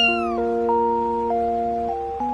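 A cat gives one short meow right at the start, its pitch rising then falling, over background music of steady held notes.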